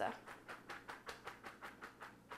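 Drained spaghetti being shaken in a plastic colander over the sink, a quick run of soft swishing strokes about six or seven a second as the last water is shaken off.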